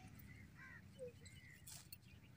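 Near silence: faint outdoor field ambience with a few faint, short distant calls.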